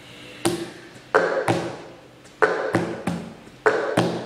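Cup-song rhythm: a cup knocked and tapped on a tabletop along with hand claps, about seven sharp hits in an uneven, repeating pattern, each with a short ringing tail.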